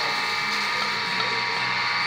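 Steady machine hum with several constant tones, under faint handling of a diesel injector being lowered into its well in an aluminium cylinder head.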